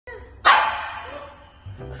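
A Shetland sheepdog puppy gives one sharp bark about half a second in, fading away afterwards. Background music with a bass beat comes in near the end.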